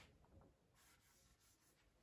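Near silence, with the faint strokes of a marker pen writing a number on a whiteboard.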